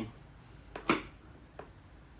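A single sharp knock about a second in, with a couple of fainter taps around it, from objects being moved while rummaging for a piece of wood.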